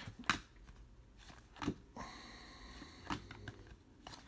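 2018 Topps Star Wars Galaxy trading cards being flipped through by hand: a faint card snap each time one is slid off the front of the stack, three times, about a second and a half apart.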